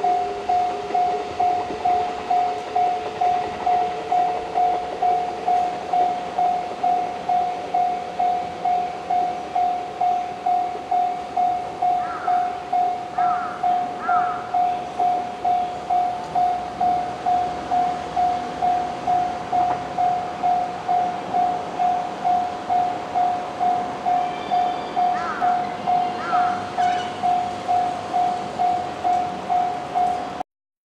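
Japanese level-crossing alarm bell ringing steadily at about two strikes a second. Under it, the departing 221 series electric train's motors rise in pitch during the first few seconds, and a few short bird-like chirps come around the middle and near the end.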